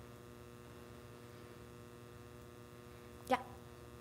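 Faint, steady electrical mains hum in the microphone and sound system, a stack of even tones with no other activity. A short spoken "yeah" comes near the end.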